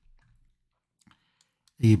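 A few faint, short clicks of a computer mouse in a pause, followed near the end by a man starting to speak.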